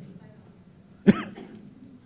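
A single short cough about a second in, during a pause in speech.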